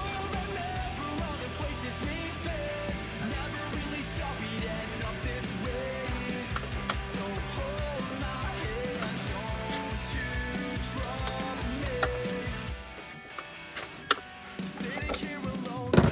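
Background rock music with guitar and drums and a steady beat. It thins out briefly about three seconds before the end, then comes back.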